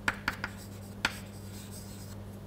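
Chalk writing on a blackboard: a few sharp taps and short scratches as the letters are written, over a steady low hum.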